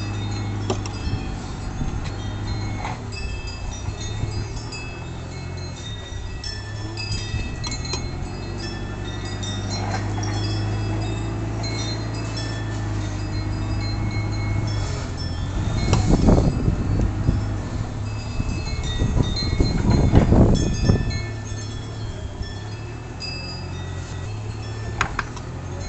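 Wind chimes ringing irregularly, many short high tones, over a steady low hum. Two louder rushing swells come in the second half.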